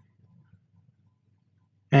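Near silence: faint low room hum, with a man's voice starting to speak right at the end.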